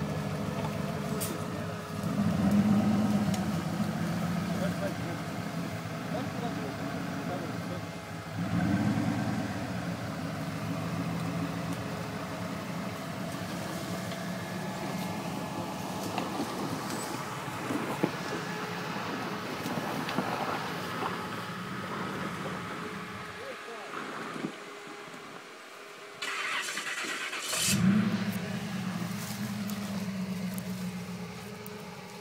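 Modified Jeep Wrangler's engine labouring under load as it crawls up a steep muddy slope, revved hard in surges every few seconds. Shortly before the end the engine sound drops away for a few seconds, then returns with another burst of revs.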